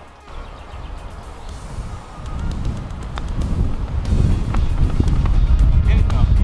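Background music with a deep bass, fading in and growing steadily louder.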